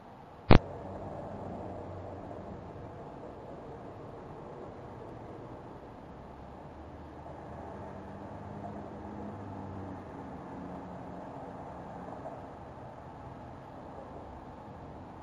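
Steady hiss with a faint low hum from a security camera's microphone, broken by a single sharp click about half a second in.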